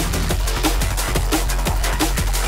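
Drum and bass music: a fast breakbeat with busy hi-hats and a heavy snare hit about every two-thirds of a second, over a steady deep bass line.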